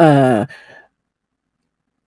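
A woman's short voiced sigh, falling in pitch, lasting about half a second.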